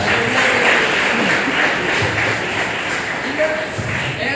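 Many voices talking over one another in a large, echoing hall, with a few dull thumps, two seconds in and near the end.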